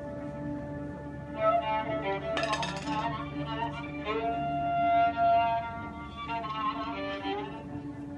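Violin playing an improvised oriental taqasim, with sliding, ornamented melodic phrases over a steady held drone note.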